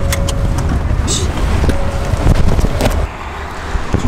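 Car cabin noise heard from the back seat of a moving car: a steady low rumble of engine and road, with a few light clicks. The rumble eases a little near the end.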